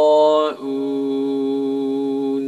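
Male Quran recitation in tajwid style: one long, drawn-out vowel held on a steady pitch, stepping down about half a second in to a lower sustained note.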